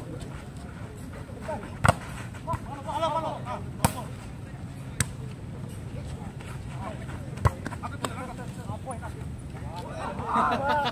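A volleyball being struck during an outdoor rally: four sharp slaps of hand or arm on the ball, spaced one to two and a half seconds apart.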